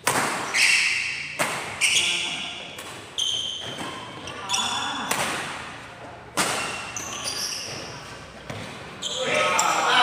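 A fast badminton doubles rally: a string of sharp racket strikes on the shuttlecock, often less than a second apart, echoing in a large hall.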